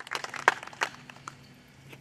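Handling noise picked up by a podium microphone as someone settles at the lectern: a quick run of sharp clicks, knocks and rustles, loudest about half a second in, then a few sparser clicks.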